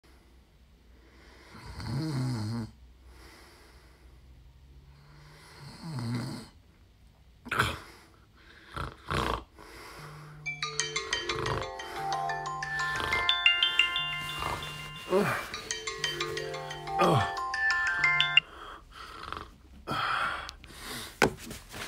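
A man snoring in two long breaths, then a few sharp snorts. About halfway in, a phone alarm starts playing a repeating chiming tune over more snorts, and it cuts off shortly before the end.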